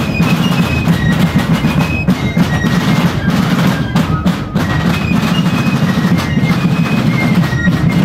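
Fifes and rope-tension field drums playing together: a high fife melody of short, changing notes over a dense, steady drum beat.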